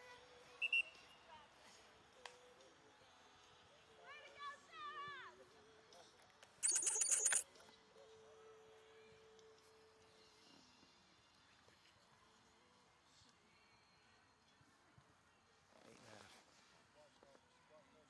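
A short, trilling referee's whistle blast, under a second long, about seven seconds in, with a distant voice calling out shortly before it. The rest is faint outdoor quiet.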